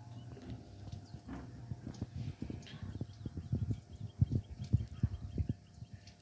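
Steady low hum from a Whirlpool fully automatic washing machine that is switched on and filling with only a trickle of water. From about two and a half seconds in come irregular soft knocks.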